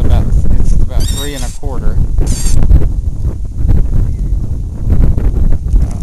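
Wind buffeting the microphone in a steady low rumble, with two short, high, wavering cries, the first about a second in and the second, higher and briefer, about two seconds in.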